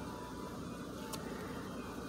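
Steady low background hum, with one faint click about a second in.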